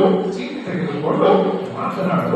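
A person's voice imitating a dog, in a put-on animal voice as part of acting out a story.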